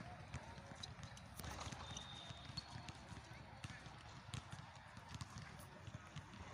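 Faint outdoor background: distant voices with soft, irregular low thumps and a few light clicks.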